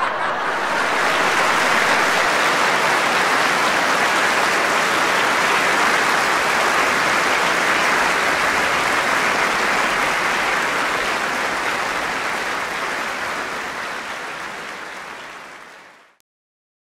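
Audience applauding steadily, a dense clapping that fades out over the last few seconds.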